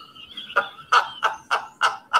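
A man laughing heartily: a run of short 'ha' bursts, about three a second, starting about half a second in.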